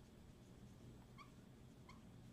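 Faint squeaks of a marker writing on a whiteboard, two short ones about a second in and near the end, over near silence.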